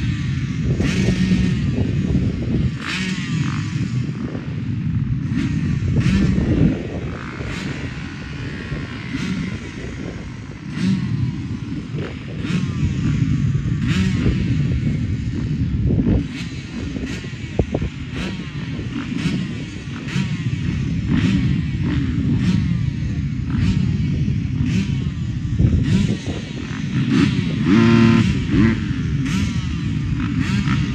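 A pack of motocross bikes revving together at the starting gate while waiting for the start, engine pitch rising and falling in overlapping blips. One engine stands out loudest about 28 seconds in.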